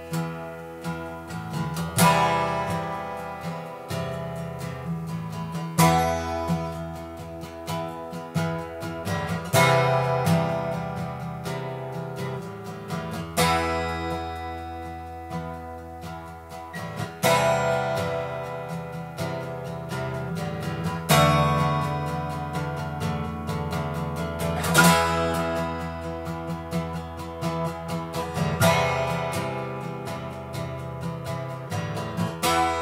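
Acoustic guitar strummed in a slow, steady pattern: a hard strum about every four seconds, with lighter strokes between and the chords left to ring.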